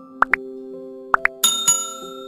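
Subscribe-button animation sound effects over soft, steady keyboard music: two pairs of short rising pops for the like and subscribe clicks, then a bright bell-like chime struck twice about one and a half seconds in for the notification bell.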